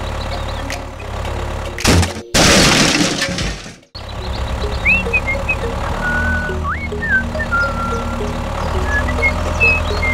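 Background music; about two seconds in, a loud crash sound effect cuts in and dies away over about a second and a half to a moment of silence, then the music resumes.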